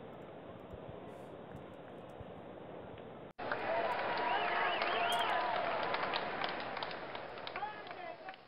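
Faint steady hiss. About three seconds in, it cuts abruptly to a louder inserted recording of many overlapping voices, which thins out near the end.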